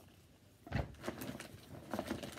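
Packaging being handled while unpacking a box: quiet at first, then a little under a second in a dull thump followed by rustling and a few light knocks and clicks.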